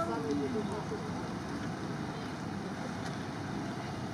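Suzuki Samurai engine running steadily at idle as the jeep crawls along by itself in low-range (1:4) transfer-case gearing, a low even rumble. A faint voice is heard briefly in the first second.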